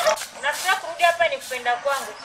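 A voice singing in short phrases that rise and fall in pitch, with a wavering, drawn-out note near the end.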